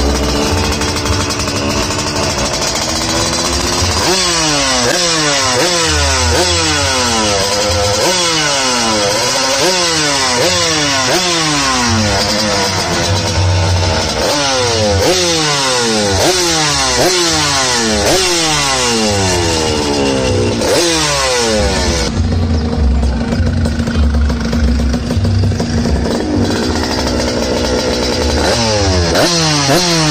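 Race-prepared Yamaha Calimatic 175 single-cylinder two-stroke engine being revved in quick repeated blips, roughly one a second. After the middle it settles to a steady idle for a few seconds, then the blips start again near the end.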